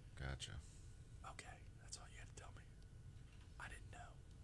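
Faint, low voices talking quietly, as if away from the microphones, over a near-silent room.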